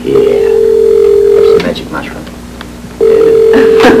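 Telephone ringback tone heard through a handset: two steady electronic rings, the first about a second and a half long, the second starting about three seconds in. The call is ringing at the far end and has not yet been answered.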